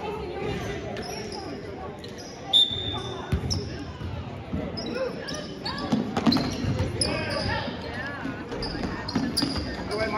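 Basketball being dribbled on a hardwood gym floor, with short high sneaker squeaks from players running and background voices echoing in the gym. The loudest single sound is a sharp knock about two and a half seconds in.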